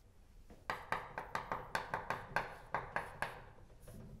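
Chalk writing on a blackboard: a quick run of sharp taps and clicks, about four a second, starting about half a second in and going on to near the end.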